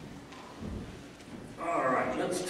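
A few soft footsteps in a quiet hall, then a man's voice starts over the sound system near the end.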